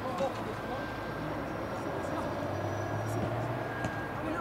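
Scattered shouts and calls from players across an open football pitch, over a low steady engine hum that grows louder past the middle and then eases off.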